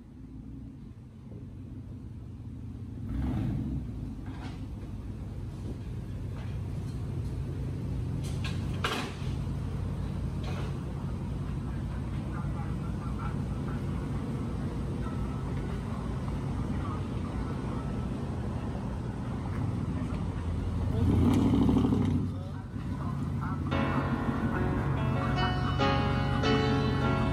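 Ford F-150 V8 running through a true dual exhaust with high-flow cats, a low steady rumble with two louder surges, one a few seconds in and a bigger one about three quarters of the way through. Music comes in about two seconds before the end.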